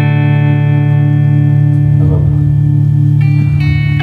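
A live instrumental chord held and left to ring, slowly fading over a held bass note; a few new notes are picked out about three seconds in.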